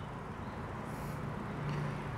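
Faint noise of a motor vehicle driving: a low engine hum that comes up in the second half and grows slightly louder, over a faint road hiss.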